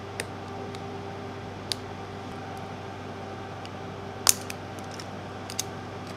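A small flat-blade tool prying open the metal shell of a CFast memory card: a few sharp clicks and snaps, the loudest about four seconds in, over a steady background hum.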